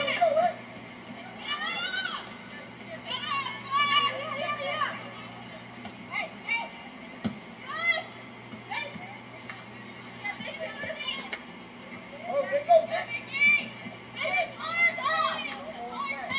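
Many young, high-pitched voices shouting and calling out across a soccer field in scattered bursts, loudest near the start and again in the last few seconds, over a steady low hum.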